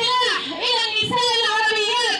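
A woman reading aloud into a microphone in a high, sing-song voice, her pitch held level through long drawn-out phrases with short breaks.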